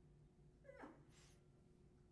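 Near silence: quiet sanctuary room tone with a faint steady hum and one soft, brief sound falling in pitch a little under a second in.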